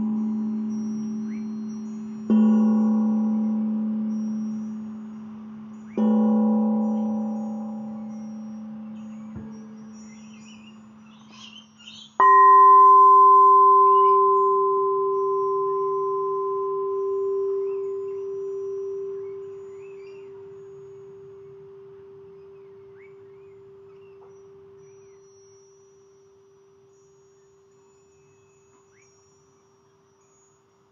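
The same low note struck three times with a mallet on a resonant metal instrument, about four seconds apart, each ringing rich in overtones and fading. Then a singing bowl is struck once and rings with two pure tones, fading away slowly.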